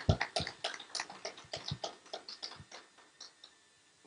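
A small audience applauding, its separate claps thinning out and dying away about three and a half seconds in.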